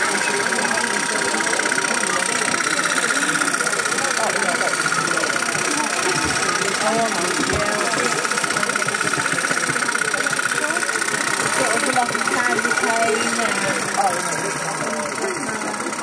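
Toy live-steam engines and their belt-driven workshop models running steadily, a fast continuous mechanical clatter, with people talking around them.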